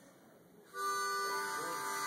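A harmonica chord held for just over a second, starting partway in, changing once midway and cutting off abruptly.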